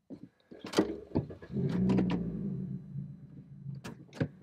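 Car sounds: a few sharp clicks and knocks of a door and its mechanism, then a car's motor humming steadily for about two seconds before fading.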